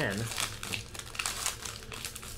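Foil trading-card pack wrapper crinkling in the hands as it is pulled open, a fast irregular crackle.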